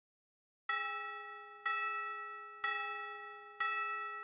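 A bell-like chime struck four times at the same pitch, about once a second, each stroke ringing out and fading before the next. It starts after a short silence.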